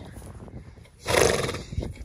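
A horse gives one short, loud vocal sound about a second in, lasting about half a second.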